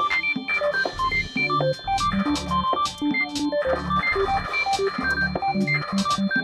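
Computer-programmed electronic music: quick short synthesized notes hopping around in pitch over blocky low bass tones, punctuated by frequent sharp clicks.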